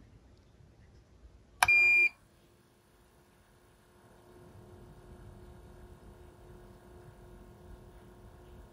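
Marcum M3 ice-fishing flasher giving one short, high beep as it powers on. A few seconds later its spinning display starts up with a faint, steady hum, pretty quiet.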